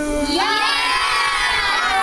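A crowd of children shouting and cheering together, many high voices overlapping, swelling about a third of a second in.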